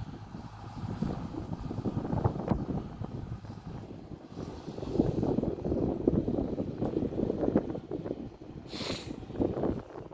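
Tomoba Brussels sprouts harvester working in the field, heard as a low, uneven rumble. A brief hiss cuts in near the end.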